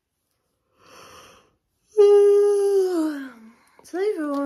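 A woman yawning: a breathy intake, then a loud drawn-out voiced 'aaah' that slides down in pitch as it fades.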